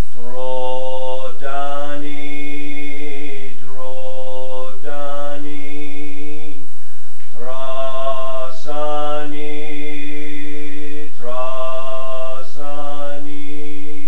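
A man chanting a Buddhist mantra on one steady low pitch, holding long syllables in phrases broken by short pauses.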